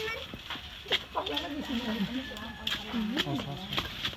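Background chatter of several people talking at once, with a few sharp clicks or knocks in between.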